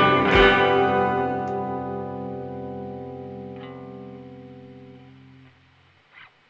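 Electric guitar (Fender Jazzmaster in CGDGBB alternate tuning) strikes a final chord and lets it ring, fading slowly for about five seconds before it stops.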